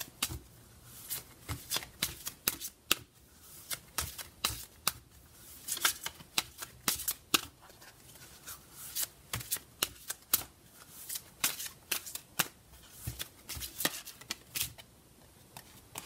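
A deck of oracle cards being shuffled hand to hand: a run of quick, irregular card slaps and flicks, in clusters with short pauses between them.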